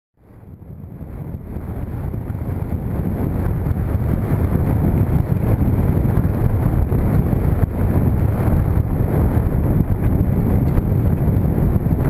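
Wind rushing over a bicycle-mounted camera's microphone while riding, a steady low rumble that swells up over the first few seconds.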